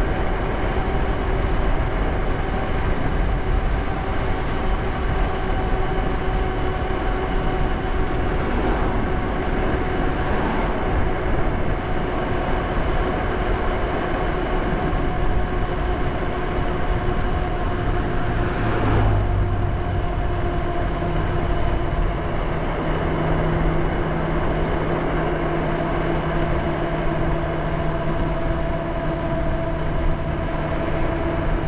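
Lyric Graffiti e-bike riding at speed: a steady motor whine over wind buffeting the microphone and tyre noise. The whine sinks slightly in pitch as the bike slows from about 30 to 26 mph, and a lower hum joins about two-thirds of the way in.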